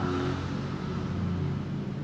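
Low, steady hum of a running motor, a few even tones held under the room sound.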